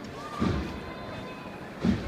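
Bass drum of a processional cornet-and-drum band marking a slow beat, one dull stroke about every second and a half, twice here, over crowd murmur.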